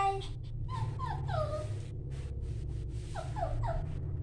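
A puppy whimpering in short, high, falling whines: a few about a second in and another few near the end, as it hesitates to step down the stairs.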